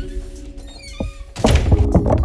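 Background music, with a faint high squeak, a sharp knock about a second in, and loud bumping and rubbing of the phone being handled near the end.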